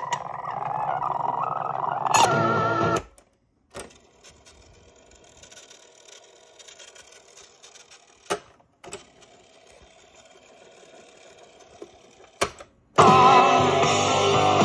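Panasonic RX-5090 boombox cassette deck worked through its piano-key transport controls. For about three seconds, sped-up, warbling music plays in fast-forward cue. Then comes faint winding with several sharp key clicks, and rock music plays normally from its speakers again near the end.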